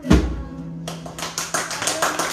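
Djembe played by hand: one deep, loud bass stroke right at the start, then from about a second in a quick, irregular run of sharp slaps and taps.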